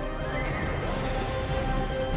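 News programme's closing theme music: sustained chords, with a rising whoosh that sweeps up in pitch over the first second.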